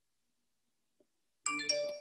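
Dead silence, then about one and a half seconds in a short chime of two ringing notes, the second entering a moment after the first.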